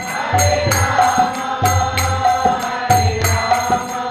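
Kirtan: small brass hand cymbals (kartals) struck in a steady rhythm, about three strokes a second, each ringing on, with low drum beats and group chanting of a mantra.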